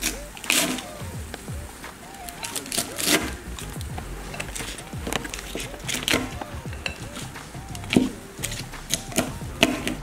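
A deep-frozen cabbage leaf cracking and shattering like glass as it is pressed and smashed with a glass container, in irregular sharp cracks and crunches, the loudest about half a second, three, six and eight seconds in. Background music plays underneath.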